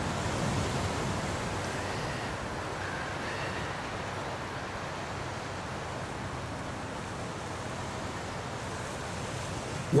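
Steady wash of sea surf and wind, with no distinct events.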